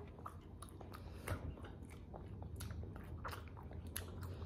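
A person chewing soft, chewy Turkish nougat close to the microphone: a run of faint, irregular wet mouth clicks and smacks.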